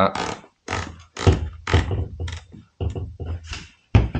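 Hatsan Escort shotgun's retaining cap being fitted onto the magazine tube at the front of the synthetic foregrip: a series of short, irregular rubs and knocks of hands and parts, with a sharp click near the end.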